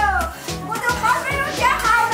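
Conversational speech in Sichuan dialect over background music with a steady beat.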